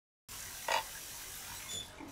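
Tap water running steadily into a kitchen sink, starting a moment in, with a brief knock about half a second later and a light ringing clink near the end.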